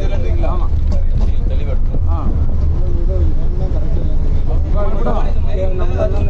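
Steady low rumble of a bus engine heard from inside the cabin, under the raised voices of people talking over it.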